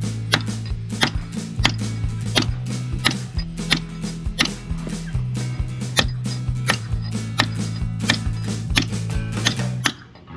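Mallet striking a steel caulking iron in quick, irregular blows, about three to four a second, driving caulking cotton into the keel seams of a wooden hull. Background music with sustained low notes runs underneath.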